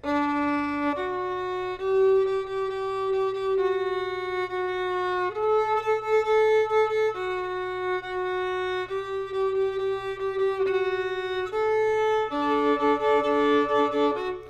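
Solo violin playing a slow phrase of sustained bowed notes, changing pitch every second or two. Near the end it holds a double stop on the open D and A strings sounding together.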